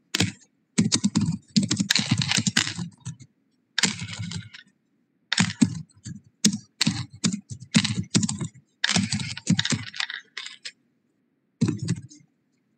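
Typing on a computer keyboard in bursts of rapid keystrokes, each about a second long, with short pauses between them.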